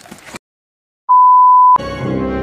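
A single loud, steady electronic beep of one pure high pitch, lasting under a second. It comes after a moment of dead silence and cuts off as music starts near the end.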